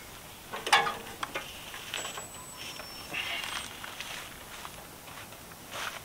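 Handling noise from PVC pipe and fittings being worked by hand: a sharp knock a little under a second in, then faint scrapes and rustling.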